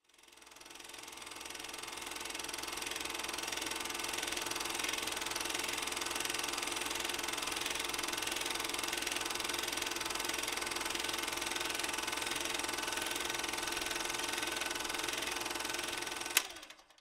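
Film projector running with a steady mechanical whir and rattle, fading in over about two seconds and then holding level.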